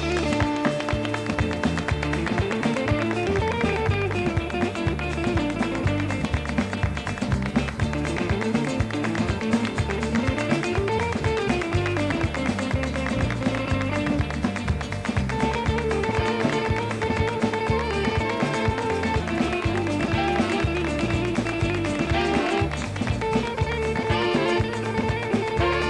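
Live band playing an instrumental passage of a Latin-flavoured dance tune, with electric guitar, bass guitar and a steady beat, cutting in suddenly. Melodic runs climb and fall, and from about halfway the saxophones hold long notes.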